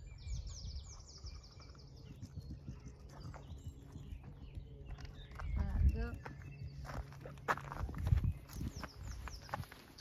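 Footsteps on grass with a low wind rumble and bumps on the microphone, two heavier bumps in the second half. A songbird gives quick falling chirps near the start and again near the end.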